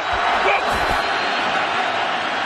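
Stadium crowd noise from a football game: a steady, even roar with faint voices in it.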